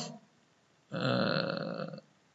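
A man's voice: a spoken word trails off, and after a short pause he holds a steady-pitched hesitation sound, a drawn-out "uhh", for about a second.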